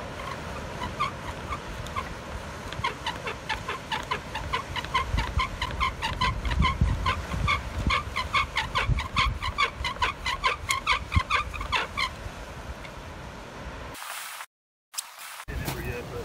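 Bow drill: a driftwood spindle squeaking in a driftwood hearth board, one squeak with each stroke of the bow, as the friction heats the wood until it smokes. The squeaking stops about twelve seconds in.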